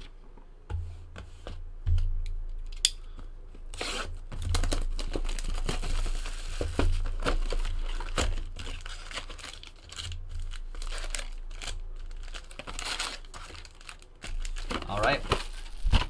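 A 2018 Topps Tribute baseball hobby box being torn open and its wrapped card packs pulled out. The wrappers crinkle and rustle irregularly, with handling knocks against the box and table.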